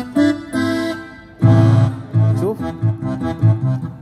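Yamaha PSR-A5000 arranger keyboard played with the left hand, set to Full Keyboard fingering: held chords, then a fuller, bass-heavy chord coming in about a second and a half in, followed by repeated bass notes.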